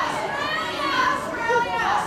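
High-pitched voices of audience members shouting answers from the crowd, heard distantly off the microphone, calling out where they have travelled from.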